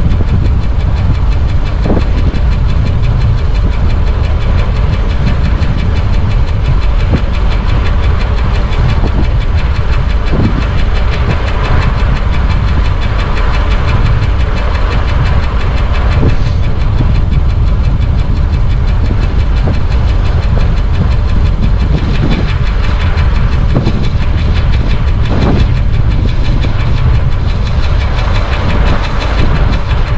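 Loud, steady wind rumble on the camera microphone of a Stromer ST2 speed e-bike riding at about 45 km/h, with a few short knocks scattered through.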